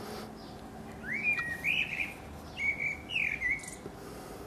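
Common blackbird singing: two short fluted phrases of gliding whistles, the first about a second in and the second about a second and a half later.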